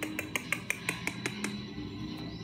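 Rapid, evenly spaced clicking, about six taps a second, as a Pomeranian puppy's claws tap on a hard wooden floor. The clicking stops about one and a half seconds in.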